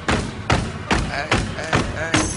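Hip-hop music track with a steady drum beat, about two and a half hits a second.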